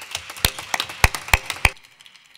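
A few people applauding with hand claps, four louder sharp claps standing out over the rest; the clapping stops shortly before the end.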